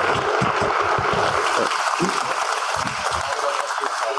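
Audience applauding steadily, with a few voices mixed in; it thins out near the end.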